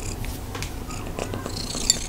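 A cat eating kibble and freeze-dried chicken from a ceramic bowl: small scattered crunches and nibbling clicks. Near the end there is a louder crisp rustle as it tugs a strand of freeze-dried chicken loose.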